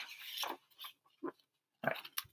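Paperback book pages being turned: a short papery rustle, then a couple of faint soft sounds.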